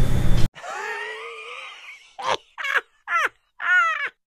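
A person's high, drawn-out whimpering groan of dismay, then four short rising cries in quick succession. The background room noise cuts out abruptly about half a second in.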